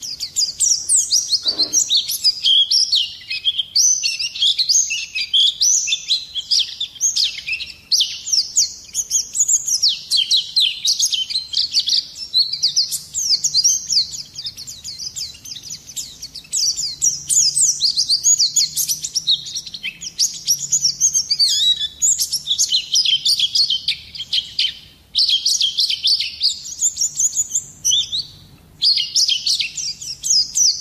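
A white-eye (pleci) sings a fast, unbroken stream of high, quick sliding chirps and twitters. It pauses briefly twice in the last few seconds.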